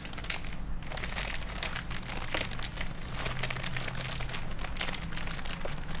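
Thin plastic bag crinkling and crackling as hands squeeze and knead clumped light brown sugar out of it into a plastic tub, with an irregular run of small crackles throughout.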